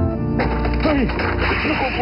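Cartoon sound effects of wood cracking and clattering, a rapid splintering crackle, amid a battle.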